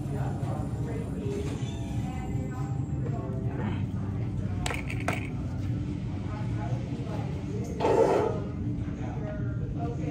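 Electric potter's wheel running with a steady low hum under indistinct background voices. A brief louder sound comes about eight seconds in.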